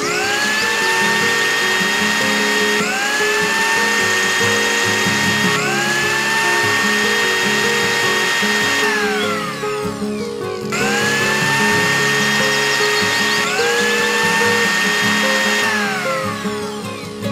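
Miniature toy mixer-grinder's small electric motor whirring as it blends a biscuit mixture, run in bursts that each begin with a rising whine, with a short stop about nine seconds in and a falling whine as it switches off near the end. Background music plays underneath.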